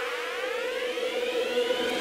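Electronic intro music: a synthesized riser, several tones sweeping steadily upward in pitch over a held steady note.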